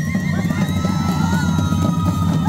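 Live Andean folk music: a flute plays long held notes, sliding up to a higher note early on, over bass drums beaten steadily.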